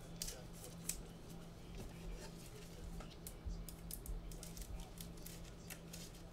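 Faint, scattered clicks of computer keys at an irregular, unhurried pace, over a low steady hum.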